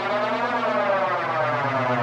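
Electronic music: a sustained synthesizer chord over a steady low bass note, its upper tones sweeping up and then back down.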